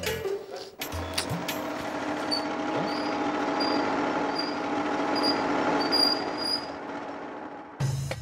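Motor scooter engine running as it approaches, growing louder and then easing off as it pulls up.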